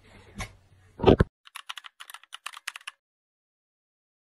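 A single dull thump about a second in, then a quick run of about a dozen light keyboard-typing clicks, a typing sound effect, ending abruptly in silence.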